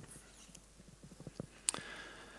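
Faint irregular clicks and taps in a quiet room, with one sharper click near the end.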